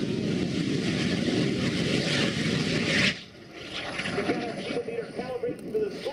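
Helicopter turbine engine of a jet-powered Polaris RZR running at full power on a high-speed run. It makes a loud jet roar that cuts off suddenly about three seconds in, leaving a faint high whine that slowly falls in pitch.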